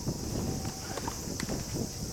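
Tennis-court ambience: faint footsteps and soft irregular knocks over a low wind rumble, with one sharp tap about one and a half seconds in.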